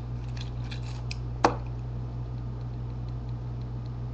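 A steady low hum with a few faint clicks early on and one sharp click about one and a half seconds in.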